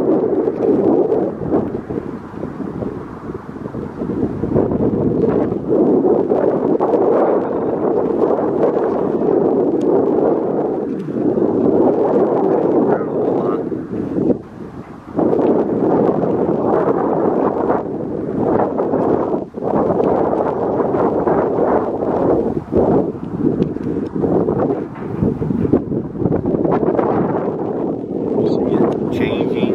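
Wind buffeting the camera's microphone: a loud, gusty rush that swells and eases, dropping briefly about halfway through.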